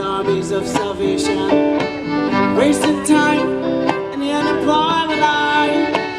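Live violin playing a melody with pitch slides over guitar accompaniment.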